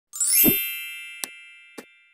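Logo-intro sound effect: a quick rising sweep into a bright ringing chime over a low thump, the chime slowly fading, then two short clicks in the second half.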